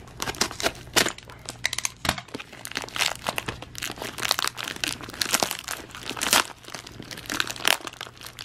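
Plastic poly mailer torn open by hand, its plastic crinkling and ripping in a dense, irregular run of crackles.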